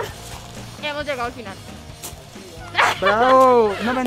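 Young people's voices: short bursts of laughter-like vocalizing, then a loud, drawn-out rising-and-falling cry of 'aww' about three seconds in.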